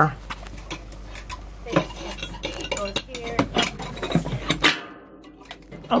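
Scattered metallic clinks and knocks of the emergency hand bilge pump's removable handle being stowed back into its snap clips.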